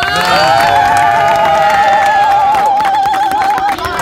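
A boy holds one long, high sung note with a strong vibrato for about three seconds, ending near the end. Under it a crowd cheers and claps.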